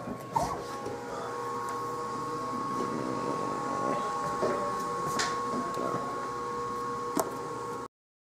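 A refrigerator being opened: a few short clicks and knocks of the door and its contents over a steady hum of several high, level tones. The sound cuts off suddenly just before the end.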